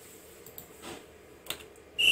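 A few faint, short computer mouse clicks over quiet room tone, the sharpest about one and a half seconds in.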